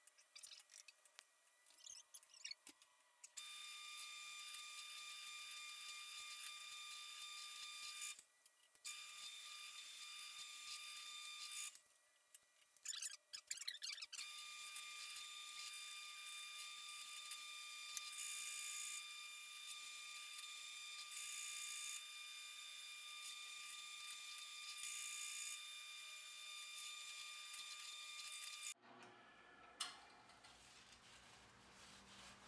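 Drill press running with a steady high-pitched whine while a Forstner bit bores overlapping holes to clear out a mortise in a wooden workbench leg. The sound starts about three seconds in, drops out twice briefly, and stops abruptly just before the end.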